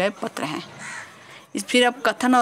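A woman's voice speaking Hindi in short phrases, with a pause of about a second in the middle.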